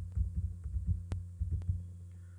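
Computer keyboard keys pressed in a quick, irregular series of soft clicks as the digit 1 and Enter are typed over and over, with one sharper click about a second in. A steady low hum runs underneath.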